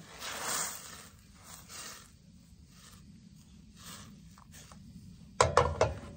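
Water hissing and sizzling in a hot stainless steel skillet as it is deglazed, loudest in the first second and then fading to a faint hiss.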